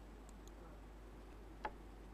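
A few light clicks from a laptop being operated, the clearest one about one and a half seconds in, over a low steady hum of room tone.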